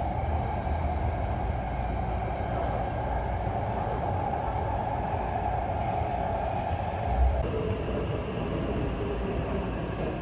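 Taipei Metro train running, heard from inside the car: a steady drone from the motors and wheels on the rails. About three-quarters of the way through, a low bump is followed by the tone stepping down to a lower pitch.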